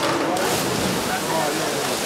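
Swimmers' dive splash hitting the water off the race start about a third of a second in, then a steady wash of churning water and crowd noise with shouting voices in the echoing pool hall.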